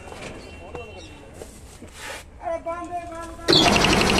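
A 10 HP electric-motor-driven piston air compressor starts up about three and a half seconds in. It jumps suddenly from quiet to loud, steady running with a rapid, even pulsing from the pump. Its head has just been serviced, and the mechanic takes it to be drawing air properly again.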